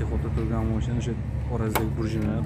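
A man talking over a steady low hum, with one sharp metallic click about three-quarters of the way through from a screwdriver working at a car's throttle body.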